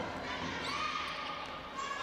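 Steady basketball-gym ambience: a low, even murmur of court and crowd noise in a large hall, with no distinct ball bounces or shouts standing out.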